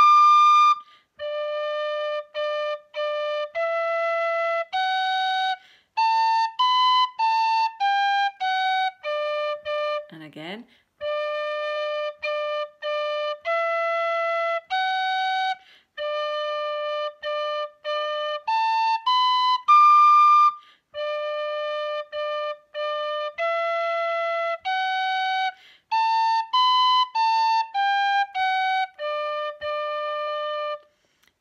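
D tin whistle playing the first half of a Scottish reel, each phrase opening with three quick repeated low D notes before stepping up the scale. The passage is played through twice, with a short break about ten seconds in.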